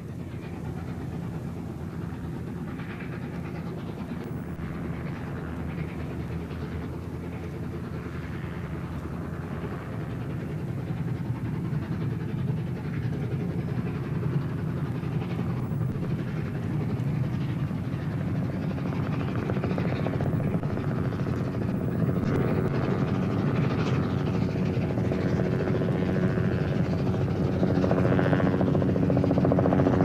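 LNER A4 Pacific steam locomotive Mallard working hard with its double Kylchap exhaust, a fast, steady chuffing that grows gradually louder as the train approaches.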